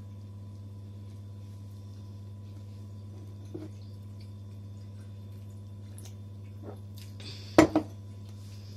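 Steady low hum with a few faint clicks, then near the end two sharp knocks close together: a glass being set down on the table.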